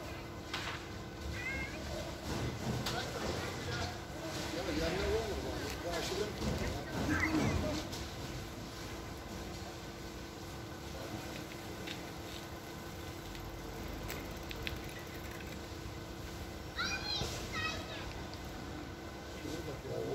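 Voices of people talking and calling out some way off, over a steady low hum. A few high, quick calls come near the end.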